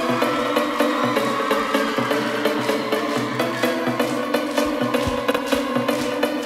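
Live dance music with no vocals: a repeating keyboard synthesizer riff over a steady high ticking beat of hi-hats and percussion, with little bass drum.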